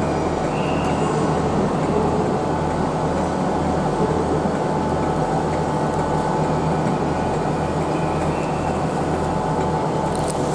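Southern Class 377 Electrostar electric trains at a station platform: a steady low hum with a gentle pulsing beat.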